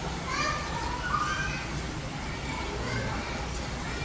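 Children's voices chattering faintly in the background, over a steady low hum.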